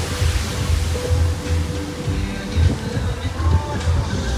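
Background music playing over an uneven low rumble of wind buffeting a phone microphone.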